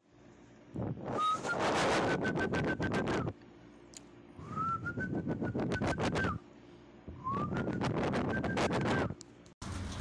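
Three whistle calls, each a note that slides up and is then held for about two seconds, over a rapid rattling hiss. It is a whistle signal used to call pigeons to their feed while taming them.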